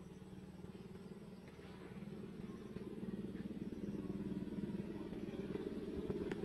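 An engine running steadily, growing louder from about two seconds in.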